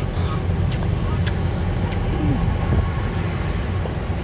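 Steady low rumble of an idling vehicle engine, with a few faint clicks.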